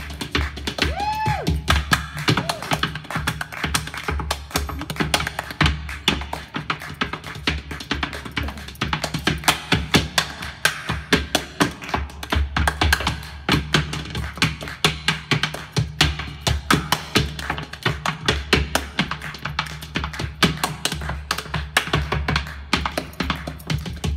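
Improvised trades of flatfoot clogging and body percussion: shoe taps and stomps on the stage floor alternating with hand slaps on the body and foot stamps, in fast, dense rhythmic strokes.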